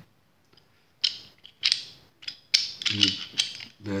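Metal-on-metal clicks and a scrape as a Stoeger Cougar 9 mm pistol's barrel is fitted back into its slide: single clicks about a second in and a little later, then a louder click with a short scrape about two and a half seconds in.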